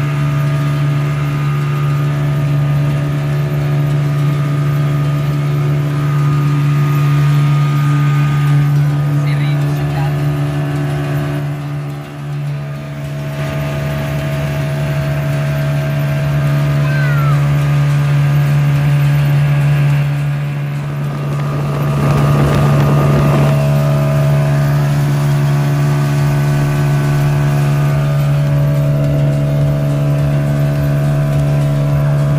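Outboard motor, a 40-horsepower unit, running steadily at cruising speed as it drives a wooden boat over open sea: a loud, even drone with a strong low hum. A brief rush of noise comes about two-thirds of the way through.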